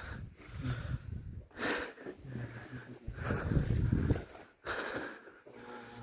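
A person breathing heavily from exertion, with several hard breaths; the longest runs from about three to four seconds in.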